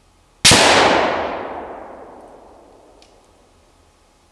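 A single shot from a VEPR semi-automatic rifle chambered in 7.62x54R, about half a second in, followed by a long echo that dies away over about two seconds.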